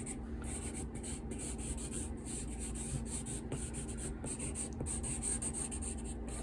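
Graphite pencil scratching across drawing paper in quick, irregular sketching strokes.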